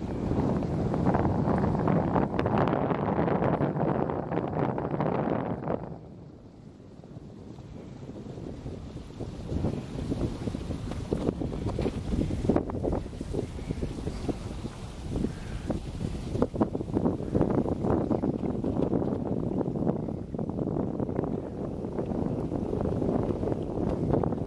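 Wind buffeting the microphone in uneven gusts, easing off for a few seconds about six seconds in before picking up again.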